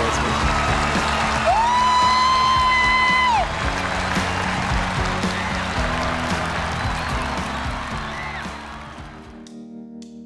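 Studio audience applauding and cheering over steady background music, with one long held high note rising above it about a second and a half in. The applause and music fade out near the end.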